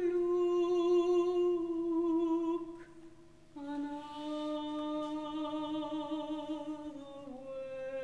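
Soprano voice holding long, slow notes with vibrato, each lower than the one before, with a short break a little under three seconds in.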